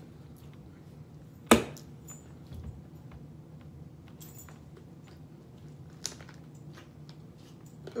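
A sharp knock about one and a half seconds in, then a few faint clicks as a piece of fruit is bitten and chewed, over a faint steady low hum.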